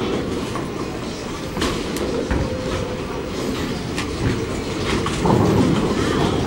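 Bowling balls rolling down wooden lanes, a steady low rumble, with a few sharp clacks of pins and ball-return machinery.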